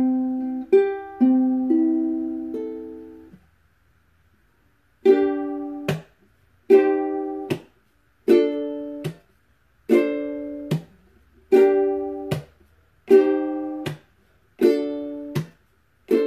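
Solo ukulele: a few chords left to ring, a short pause, then a steady pattern of strummed chords about one every second and a half, each cut off short with a muted chop.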